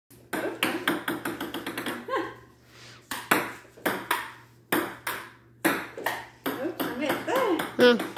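Table tennis ball clicking off paddles and the tabletop: a quick, quickening run of light bounces first, then a rally of separate hits about two a second. A voice laughs and speaks over the last second.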